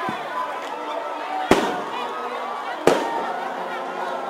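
Steady chatter from a large outdoor crowd, broken by two sharp, loud bangs about a second and a half apart.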